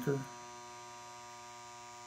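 Steady electrical mains hum, a stack of unchanging tones, with the tail of a spoken word at the very start.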